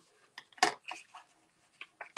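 Card stock being handled and folded by hand on a cutting mat: a few short paper rustles and taps, the loudest just over half a second in.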